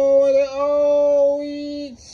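A man's long, drawn-out 'ohhh' exclamation, held on one high pitch for nearly two seconds with a short dip about half a second in.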